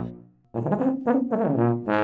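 Eastman EPH495 BBb sousaphone being played, starting about half a second in with a run of short, separate low notes.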